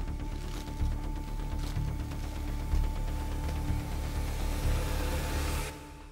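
Tense horror film score: a droning low rumble under two held tones, with a high hiss that swells and then cuts off suddenly near the end.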